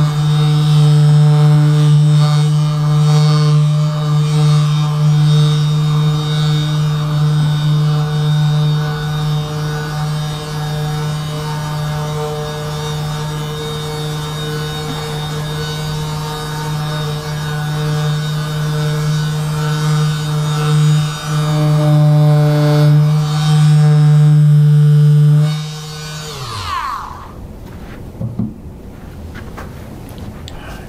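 Handheld electric vibration massager running against a person's back with a steady buzzing hum. About 25 seconds in it is switched off and its pitch falls quickly as the motor winds down.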